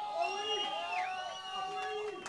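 Indistinct voices of several people talking over one another, with no clear words.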